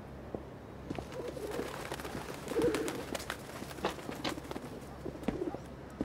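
Feral pigeons cooing a few times in low, wavering calls, with scattered footsteps on pavement.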